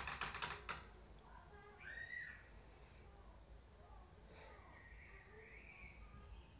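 Rapid, fine crackling for under a second as fingers work a thick, gritty oat mask into a twist of wet hair, then near-quiet with a few faint high chirps.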